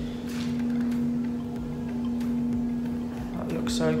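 A steady hum fills the spray booth throughout, with a few faint ticks as fine-line tape is peeled off a freshly painted motorcycle fuel tank.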